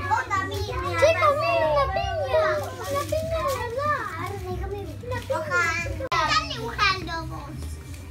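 Several young children talking and calling out over one another in high voices, with a steady low hum underneath. The sound breaks off for an instant about six seconds in.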